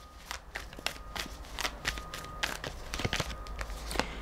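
Tarot cards being handled: an irregular string of light flicks, taps and slides as cards are drawn off the deck and laid down.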